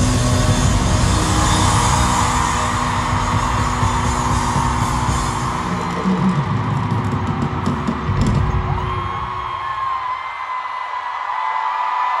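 Live concert music with electric guitar and heavy bass, loud through arena speakers, ending about eight seconds in. A crowd of fans screaming and cheering follows.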